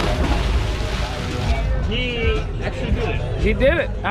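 A person jumping into the water off a boat: a loud splash lasting about a second and a half, followed by voices shouting.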